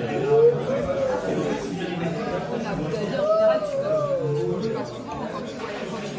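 People talking at a table, with the background chatter of a busy restaurant's diners.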